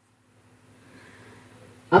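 A short pause in a man's sermon: near silence, then a faint steady hiss, until his voice starts again at the very end.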